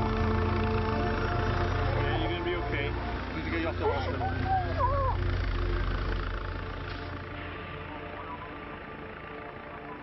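Helicopter running close by, a steady low rumble that fades away about seven seconds in, under background music. A voice rising and falling in pitch cuts through briefly around the middle.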